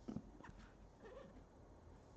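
Quiet handling of a rigid cardboard headphone box: a soft knock at the start and another about half a second in, then a couple of faint short squeaks of the lid rubbing as it is worked.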